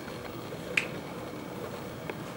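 Quiet classroom room tone with one sharp, short click a little under a second in.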